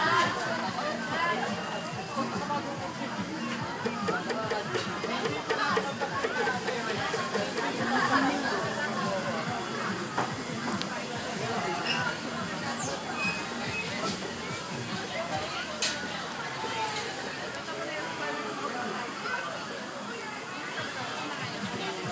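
Several people talking at once, with music playing underneath; no single sound stands out.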